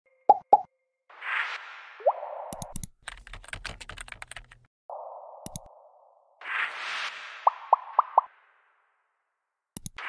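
Interface sound effects from an animated intro: two quick pops, a whoosh, then a rapid run of keyboard typing clicks and a single mouse click. A second whoosh follows with four quick pops, and a last click comes near the end.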